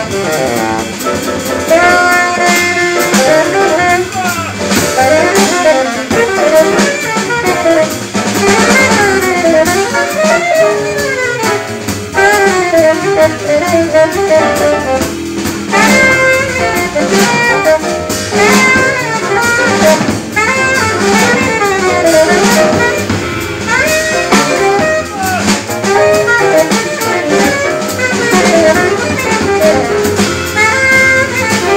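Tenor saxophone soloing in fast, winding runs over double bass and drum kit in a live jazz quintet.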